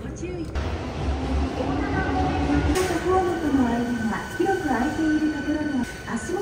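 Keihan 8000 series commuter train running, heard from inside the carriage: a low rumble through the first few seconds, with a voice wavering in pitch over it.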